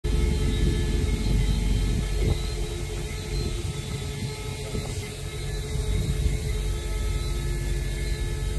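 Steady low rumble with a constant mechanical hum of several held tones, a little louder in the first couple of seconds.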